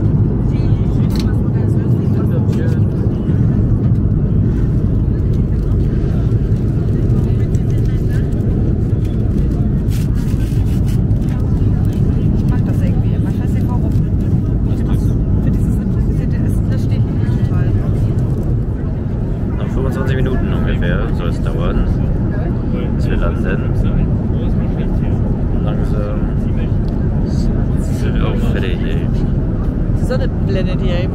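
Steady low rumble of an Airbus A330 airliner cabin in flight: engine and airflow noise heard from a passenger seat.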